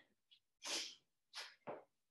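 A winded person's short, breathy exhales: three quick puffs, the first under a second in and two close together near the end.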